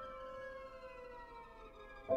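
Quiet contemporary chamber music for violin, cello and piano: held notes ring on while the bowed strings slide slowly downward in pitch, with no new notes struck.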